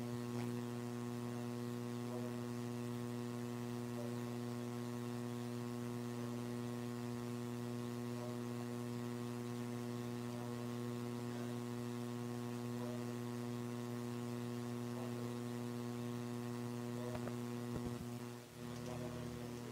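Steady electrical mains hum: a low, unchanging hum with a ladder of evenly spaced overtones.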